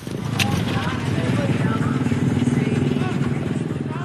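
Street traffic, with a small motorcycle engine running steadily close by and faint voices behind it.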